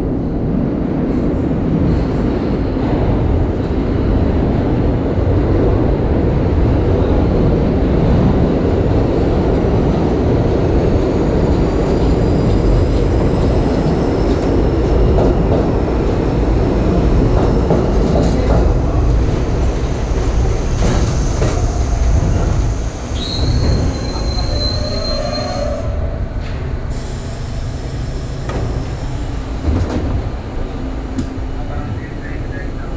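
A New York City subway train pulling into the station: a loud, steady rumble of steel wheels on the rails. About three-quarters of the way in, a high steady squeal starts as the train comes to a stop, and the rumble eases.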